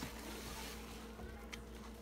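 Soapy sponges being squeezed and kneaded by hand in a tub of sudsy water: wet squishing and sloshing. A faint steady hum runs underneath.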